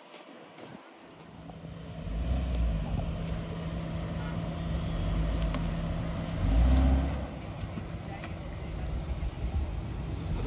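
Suzuki Jimny's 1.5-litre four-cylinder petrol engine running close by, building up about two seconds in. It revs briefly to its loudest near seven seconds, then settles back.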